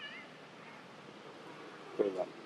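A young macaque's brief, faint, high-pitched squeaking call right at the start, over quiet outdoor background.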